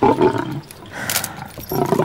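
Tiger roaring, loudest right at the start and dying away within half a second, then a second, shorter burst about a second in.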